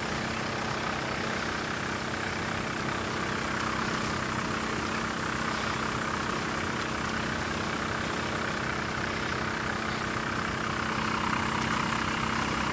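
A motor running steadily, an even hum with a constant pitch under a band of hiss.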